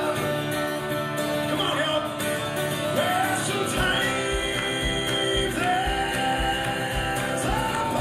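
Live acoustic country-rock band: sung vocal lines with acoustic and slide guitar, and a low steady beat of about two pulses a second coming in about halfway through.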